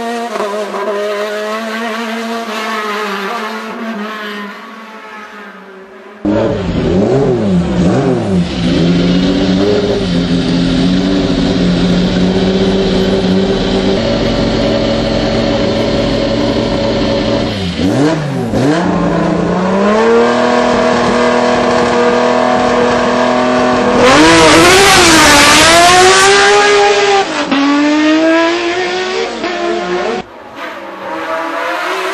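Sports-prototype race car engines. First a car's engine rises and falls through its revs and fades away over the opening seconds. After about six seconds a louder prototype engine is heard up close, held at steady revs with sharp throttle blips, and revved hard for a few seconds near the end, the loudest part.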